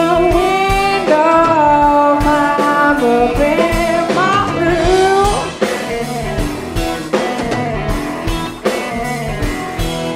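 Live blues-rock band playing: electric guitars and drums, with a lead line of sliding, bending notes. The band gets a little quieter about halfway through.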